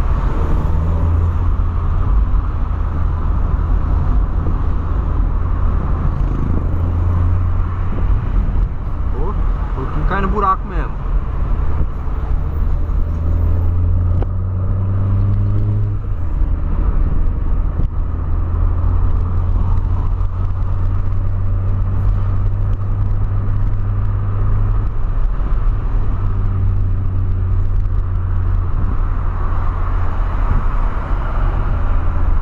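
Cabin sound of a 2008 VW Polo Sedan being driven in traffic: a steady engine and road drone whose pitch steps a few times as the car changes speed. About ten seconds in, a brief sound rises and falls in pitch over it.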